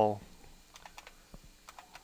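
Computer keyboard being typed: a handful of separate light keystroke clicks, irregularly spaced, as a word is typed in.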